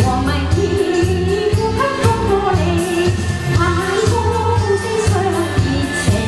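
A woman singing a Chinese pop song into a microphone over a backing accompaniment with a steady beat and bass.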